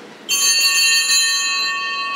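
Altar bell rung at the elevation of the chalice after the consecration, marking that moment of the Mass. Several high, bright tones start suddenly about a third of a second in and ring on steadily.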